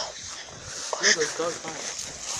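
A dog gives a short vocal sound about a second in, against low voices.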